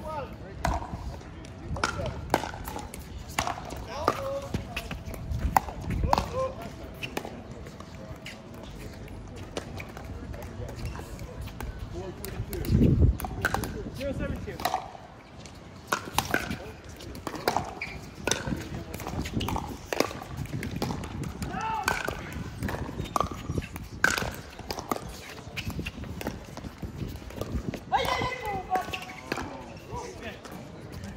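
Pickleball play: irregular sharp pops of paddles striking the plastic ball and the ball bouncing on the court, with players' voices at times. There is a louder low thud about halfway through.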